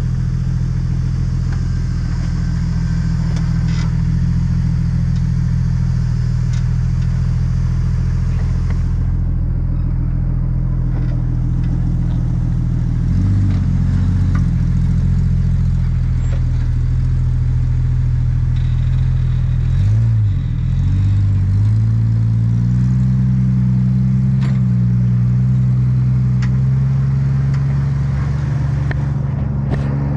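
Jeep engine running at low revs as it crawls over rock. The note holds steady, dips briefly twice, and climbs a little in pitch in the last third.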